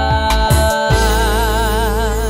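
Sung theme song over steady backing music. The singer holds one long note between lines, and the note takes on vibrato about halfway through.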